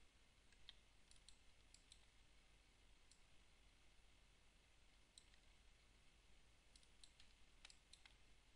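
Near silence with about a dozen faint, irregularly spaced computer mouse clicks over a low steady hum.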